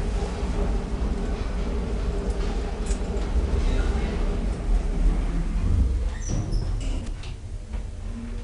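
Schindler hydraulic elevator running: a steady low hum with a faint held tone, which dies away about six to seven seconds in, followed by a few light clicks.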